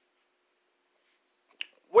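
Near silence broken by one short, sharp click about a second and a half in, then a man's voice starting right at the end.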